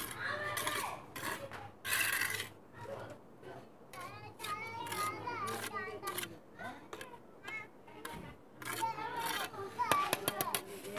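Children's voices chattering and playing in the background, with a short scrape of a steel trowel on wet cement mortar about two seconds in.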